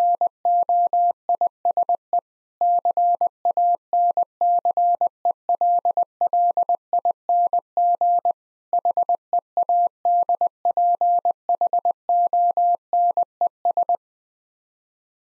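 Morse code at 20 words per minute, sent as a single steady tone of about 700 Hz keyed in dots and dashes. It spells out "noise cancelling headphones" in three words, with longer pauses about two seconds in and just after eight seconds.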